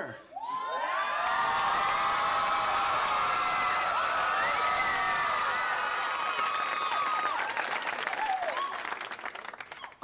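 Studio audience cheering, whooping and applauding for a guest-star entrance. It swells about half a second in, holds steady, and dies away near the end.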